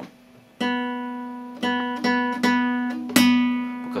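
Open B (second) string of a nylon-string classical guitar plucked four times, each note ringing on and slowly fading. This is the reference B given for tuning, and the tuner reads B.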